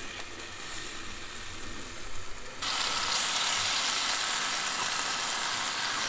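Lemon slices frying in butter in a nonstick pan, a low sizzle. About two and a half seconds in it jumps to a louder, hissier sizzle as asparagus fries in the pan.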